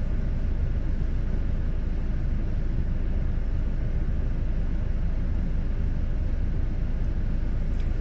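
Steady low rumble of a car's cabin noise, even and unbroken, heard through a phone's microphone.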